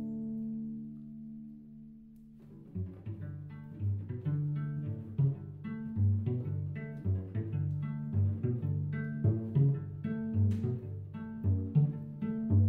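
Solo cello played pizzicato, with no bow: plucked bass notes and chords in a rhythmic groove. Notes left ringing fade away for the first two seconds or so, then the plucked rhythm picks up and carries on.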